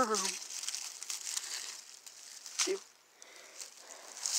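Dry leaf litter crinkling and rustling as it is disturbed, busiest in the first two seconds, with a short vocal sound about halfway through.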